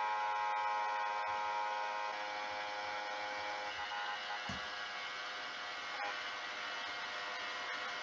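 Steady electrical hum made of several held tones, with a few faint clicks.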